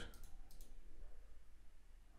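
A few faint computer mouse clicks over a low, steady background hum.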